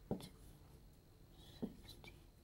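Marker pen writing on a board: faint strokes with a brief squeak about a second and a half in.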